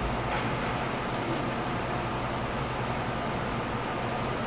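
Steady hum and hiss of electric fans and an air conditioner running in a small room. A few faint light clicks in the first second and a half.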